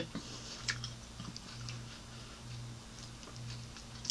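Quiet closed-mouth chewing of a mouthful of omelet: a soft low pulse about twice a second, with a few faint mouth clicks in the first second or so.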